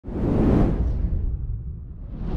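Cinematic logo-reveal sound effect: a whoosh that swells in quickly, peaks about half a second in and fades over the next second, over a deep steady rumble.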